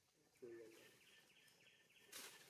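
Faint outdoor quiet, broken about half a second in by one short, low voice-like call.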